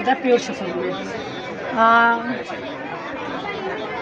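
Indistinct chatter of voices, with one voice holding a drawn-out sound for about half a second near the middle.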